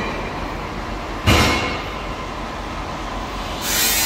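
Steady workshop background noise, a rumble with a low hum, broken by one sharp knock a little over a second in; a hiss rises near the end.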